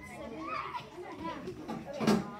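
Several children talking over one another: indistinct overlapping chatter of young voices.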